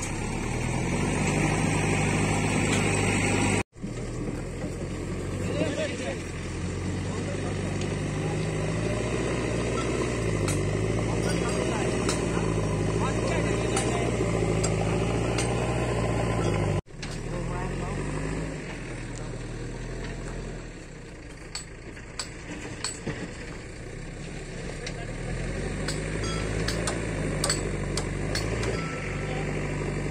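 An engine running steadily, its pitch wavering and shifting slightly as it goes, with the sound cut off briefly twice.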